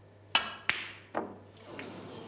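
Snooker shot: a sharp click of the cue tip striking the cue ball, then another hard click about a third of a second later as the cue ball hits the red. A duller knock follows about half a second after that.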